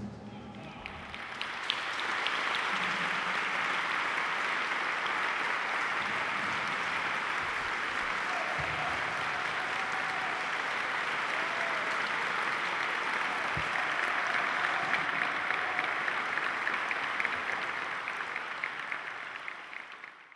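Audience applauding steadily, building up over the first two seconds and fading out near the end, with a few voices calling out.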